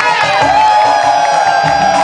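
Music with a steady low beat while a singer holds one long, wavering note into a microphone.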